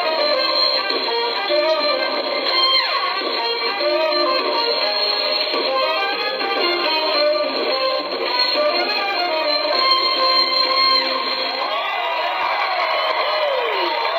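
Live smooth-jazz band playing, with guitar and a melodic lead line that slides in pitch near the end. The sound is thin and narrow, with no deep bass and no bright top, as when a video's sound is played back through a screen's small speaker.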